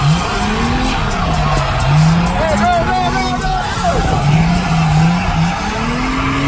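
Drift cars on the track, their engines revving up and down several times over a haze of tyre skid noise.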